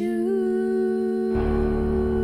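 A woman's voice holding one long, steady sung note at the end of a song, over a backing track. A low, steady layer of the accompaniment comes in a little past halfway.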